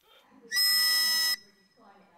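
A single steady, shrill whistle blast lasting just under a second, starting about half a second in.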